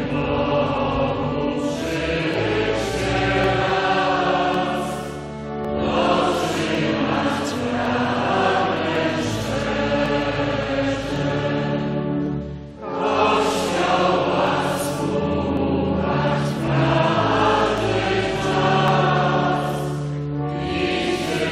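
A choir sings a slow hymn in sustained phrases, with a short break between phrases a little past the middle.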